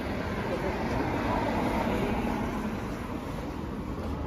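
Road traffic on a wet street: a car passing, its tyres hissing on the wet road, the sound swelling in the middle and fading toward the end.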